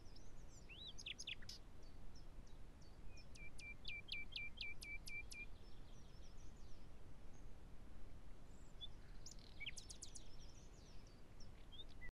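Faint birdsong over low outdoor background noise: a run of about eight quick chirps on one pitch in the middle, with scattered higher calls before and after.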